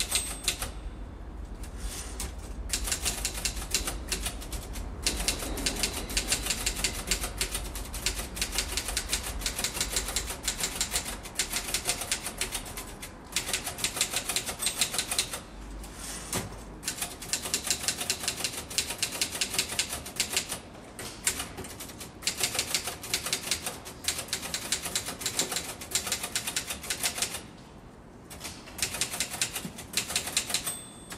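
Rapid typing on a keyboard, runs of fast key clicks broken by short pauses.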